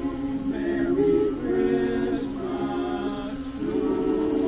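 Men's a cappella chorus singing in close harmony, moving through sustained chords and settling onto a long held chord near the end.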